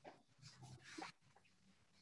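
Near silence: room tone, with a few faint, brief sounds between about half a second and a second in.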